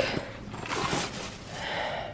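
Plastic bags and suitcase fabric rustling as items are pushed into a packed suitcase. The soft, irregular rustling comes in two stretches, about a second in and again near the end.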